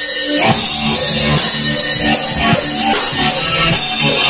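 Live rock band playing loudly: drum kit with crashing cymbals and steady drum hits under electric guitar, with the drums coming in about half a second in.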